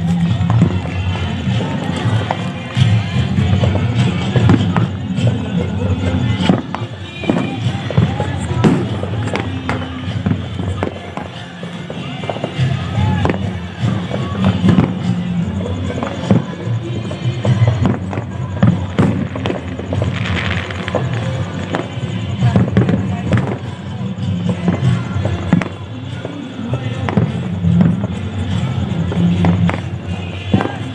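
Fireworks and firecrackers going off repeatedly in sharp bangs, with music and voices running underneath.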